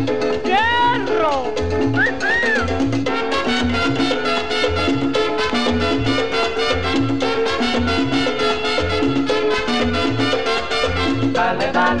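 Salsa music played from a 45 rpm vinyl single: an instrumental stretch with a repeating bass line, steady percussion and the band's melody. A pitched slide falls about a second in, and singing returns near the end.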